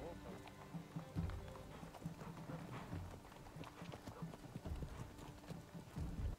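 Faint hooves of several horses clip-clopping irregularly on cobblestones, with quiet background music.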